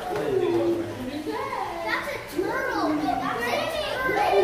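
Children's voices chattering and calling out, with several high, rising-and-falling calls in the second half.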